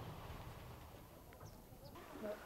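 Near silence: a faint low hum fading away, with a couple of faint, short, high chirps about a second and a half in.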